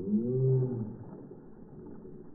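A tarpon lunging up to snatch a bait fish from a hand, a heavy splash at the water's surface heard from a camera at the waterline. The splash is loudest in the first second and carries a low pitched sound that rises and falls before fading to water noise.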